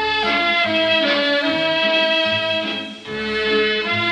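A 1938 Korean popular song played from a Columbia 78 rpm record: a small band carries the melody in long held notes over a pulsing bass line. The music dips briefly about three seconds in.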